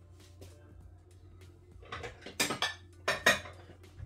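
Ceramic crockery clinking and clattering: plates and bowls being handled, in four or five sharp knocks in the second half.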